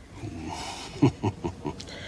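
A woman laughing: a breathy start, then a run of about four short chuckles about a second in.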